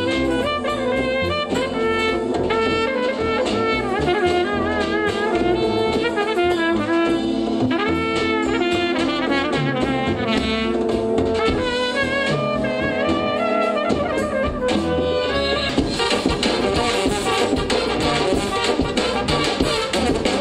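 Serbian Balkan brass band playing live: trumpets play a fast, ornamented melody over held notes from tenor horns and tuba. From about three-quarters of the way in, the sound becomes denser and busier.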